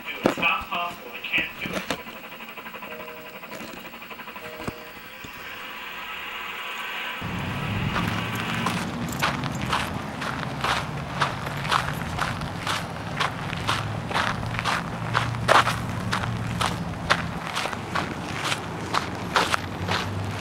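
Footsteps on pavement, roughly two steps a second, starting about nine seconds in over a low steady hum. A voice and a few faint tones come before them.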